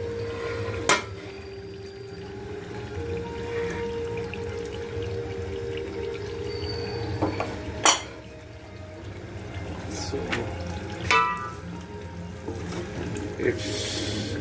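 An aluminium cooking-pot lid being lifted and handled: a sharp metal knock about a second in and a louder one near eight seconds, then a few lighter clicks, over a steady low hum.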